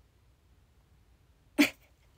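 Near silence, then about a second and a half in a single short, sharp vocal outburst from a young woman, a brief laugh-like burst of breath and voice.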